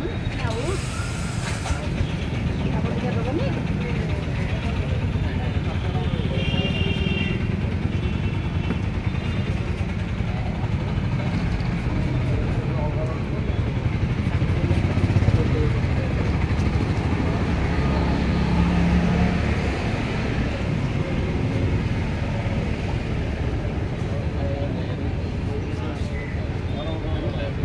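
Street noise: a steady rumble of passing traffic and motorbike engines, with people talking in the background.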